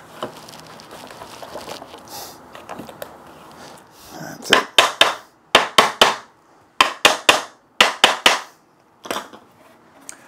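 Hammer blows on the timber parts of a wooden foot stool, knocking its joints together during assembly: about fourteen sharp knocks in quick groups of two or three, starting about four seconds in and stopping about a second before the end. Before the knocks there is only light handling of the wood.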